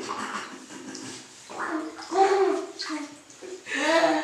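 Water splashing in a bathtub as a toddler's hands wash a rubber duck. The toddler babbles a couple of times, about halfway through and again near the end.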